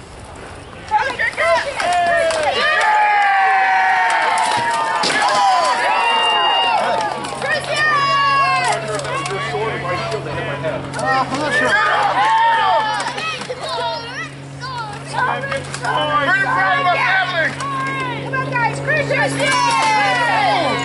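Overlapping chatter of onlookers and children's voices, with no single clear speaker. A steady low drone joins about seven seconds in, and a few sharp knocks come through the voices.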